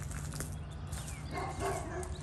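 A single short, harsh animal call about one and a half seconds in, over a steady low rumble, with faint thin chirps of small birds.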